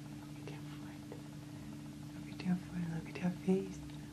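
A woman whispering and cooing softly, with a few short, low murmured sounds in the second half over a steady low hum.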